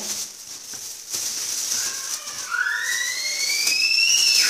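A thin plastic bag rustling and crinkling as green peppers are handled and packed into it. In the last two seconds a high whistling tone rises steadily in pitch.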